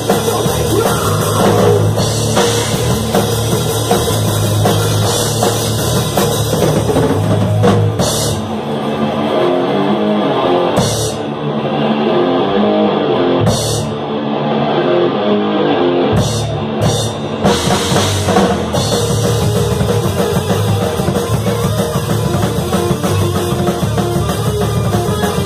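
Thrash metal band playing live in a rehearsal room: distorted electric guitars, bass and drum kit. About eight seconds in the drums mostly drop out, leaving a guitar part punctuated by a few cymbal crashes, and the full band comes back in about eighteen seconds in.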